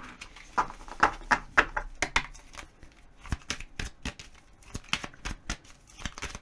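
A tarot deck being shuffled by hand: an irregular run of light card clicks and flicks.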